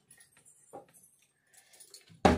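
Near silence: room tone with a couple of faint light clicks.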